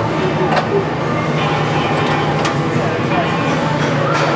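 A 20-horsepower pulp fluidizer's toothed drums running with a steady motor hum and a few short knocks. A hard ball of pulp is bouncing on top of the drums because the teeth can no longer grab it.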